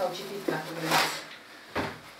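A large sheet of paper being handled and folded, rustling and crackling in three short bursts. The loudest burst comes about a second in.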